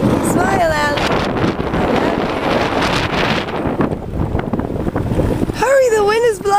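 Strong gusting wind buffeting the microphone, a loud rumbling roar throughout. A short high-pitched voice sounds about half a second in and again near the end.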